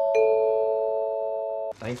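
Chime sound effect: a descending run of four bell-like notes, the last struck just after the start, all ringing on together until they cut off suddenly near the end.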